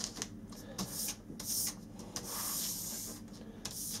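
Quiet rubbing and scraping as hands and a small brush work over thin plasticard strips on a stone worktop, with several light taps and clicks.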